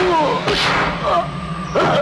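Fight-scene soundtrack: men yelling and grunting, with dubbed punch impacts and whooshes about half a second in and near the end, over background music.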